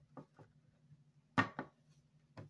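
Hard plastic graded-card slab set down on a wooden surface: a couple of light taps, then two louder clacks about a second and a half in.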